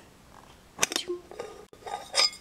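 A few short metallic clicks and scrapes about a second in and again near the end, as the pressed-in inner lid of a metal tea tin is worked open.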